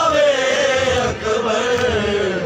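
Men's voices chanting a noha (Shia lament) together, one long held line slowly falling in pitch, with a brief dip about a second in. A regular beat of hands striking chests (matam) runs beneath it.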